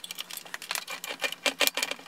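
Screwdriver working a terminal screw on a breaker panel's neutral bar, with a quick, uneven run of small metallic clicks and scrapes.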